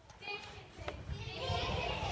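A couple of light knocks, then from about a second in many children's voices shouting and chattering at once, like a playground.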